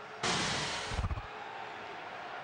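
A broadcast sound effect: a short rushing whoosh of under a second that ends in a low thump, over faint stadium background noise.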